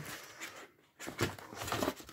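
Soft knocks and rustles of a stretched painting canvas being handled and turned over in the hands, mostly in the second half.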